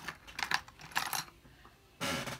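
Light clicks and clacks of small hard craft tools knocking together as they are rummaged through, several in the first second or so, then quieter.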